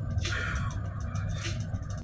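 A car driving, heard from inside the cabin: a steady low rumble of engine and road noise, with a rushing hiss rising in from about a quarter of a second in.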